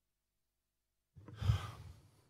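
Near silence for about a second, then a man's short sigh, a breathy exhale straight into a close microphone, fading out near the end.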